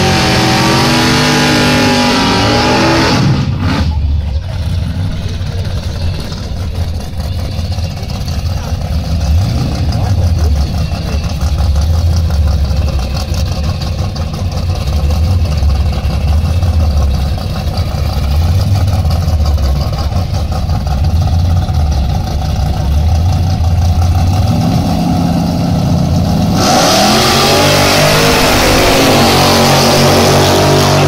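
Two drag-racing V8s, a 1978 Malibu's small-block and a 1955 Chevy 3100 pickup's engine, running at the start line with a deep, uneven rumble that swells and falls as they are blipped. Near the end both engines rev up hard and rise in pitch as the cars launch down the strip.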